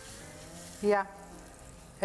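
Crepe batter sizzling in a hot frying pan as it is poured and spread, a soft hiss that is strongest in the first moments and then fades. A single short spoken syllable cuts in about a second in.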